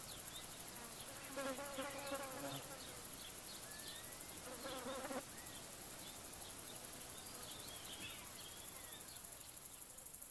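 A steady, high-pitched chorus of insects in fast, even pulses, with small birds chirping now and then. Two brief wavering calls stand out, about a second and a half in and again near the middle.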